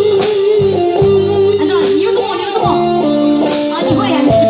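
Live band playing the instrumental introduction of a song through a PA system: a held, gliding lead melody over bass, guitar and drums.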